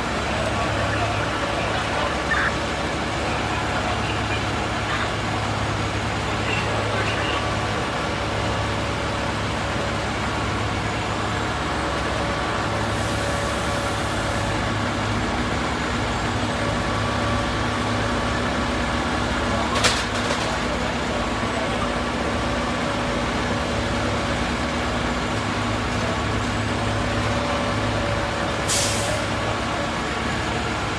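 Diesel engines of parked fire trucks running steadily. A sharp crack comes about two-thirds of the way in, and a short air hiss comes near the end.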